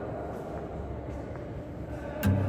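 A steady low rumble of background noise with a few faint ticks.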